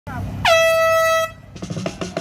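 Air horn giving one steady blast a little under a second long, signalling the start of a running race. Music with a drum beat comes in near the end.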